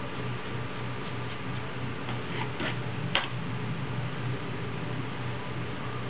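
Steady low hum and hiss, with a few light clicks about two seconds in and one sharper click just after three seconds, from hair-dyeing tools being handled.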